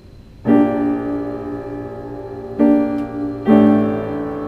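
Piano played slowly: a soft low note, then a chord struck about half a second in and left to ring, with two more chords struck later, the last a second after the one before.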